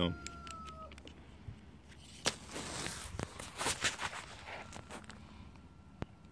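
A rooster crowing, its long held note ending about a second in, followed by a couple of seconds of rustling and handling noise close to the microphone.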